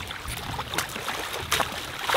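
Shallow river water splashing in short, irregular splashes as hands work at the surface, with a few louder splashes in the second half.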